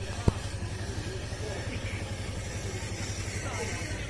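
A steady low rumble that flutters quickly, with a single sharp click about a third of a second in.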